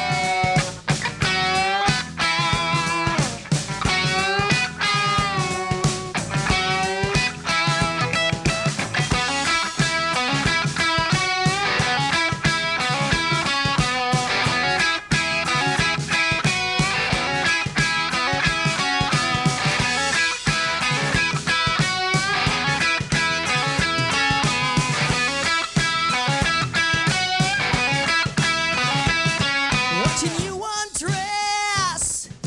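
Live rock band playing an instrumental passage: distorted electric guitars over bass and drum kit, with a lead guitar line bending notes in the first several seconds.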